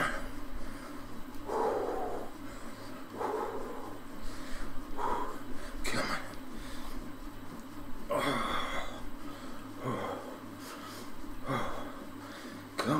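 A man breathing hard from exertion on an exercise bike, with loud noisy breaths every second or two. A steady low hum runs underneath.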